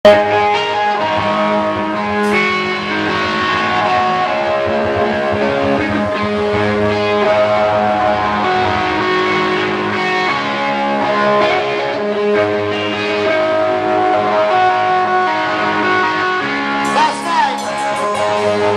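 Rock band playing live through a club PA: electric guitars holding long notes over bass and drums. Near the end comes a burst of sharp cymbal-like hits and a sliding guitar note.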